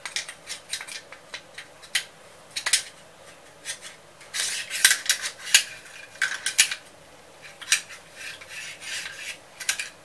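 Metal parts of a disassembled rifle being handled: a scattered run of light metallic clicks, clinks and short scrapes, with a few sharper clicks in the middle.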